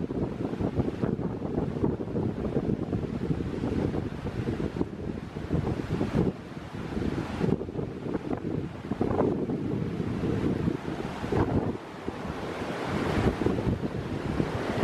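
Wind buffeting the microphone in uneven gusts, over the rushing of a river running through boulders and rapids. It is loud throughout, with brief lulls about six and twelve seconds in.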